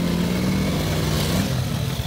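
A motorcycle engine running close by: a steady hum with noise over it, its pitch sagging slightly toward the end.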